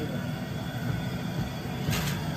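Large aluminium pot of water at a rolling boil, a steady low rumbling hiss. Near the end there is a brief splash as a ladleful of peas drops into the water.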